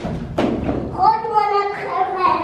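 A single thump of a hollow plastic toddler slide knocking down as it is tipped over, followed by a person's voice.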